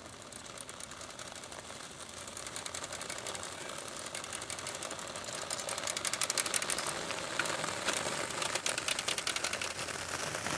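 A bicycle and a towed inline skater rolling over asphalt with a fast, even clicking rattle that grows louder as they come near and pass.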